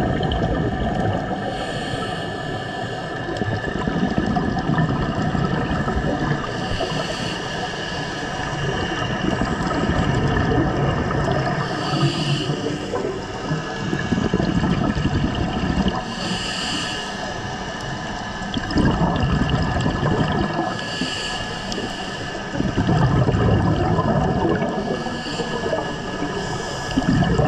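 Scuba regulator breathing heard underwater: a hissing inhale about every four to five seconds, and gurgling rushes of exhaled bubbles, over a steady hum.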